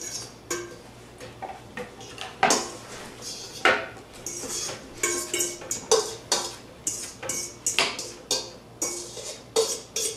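A spoon clinking and scraping against a bowl while guacamole is mixed, in irregular knocks several a second, some leaving a brief ringing note.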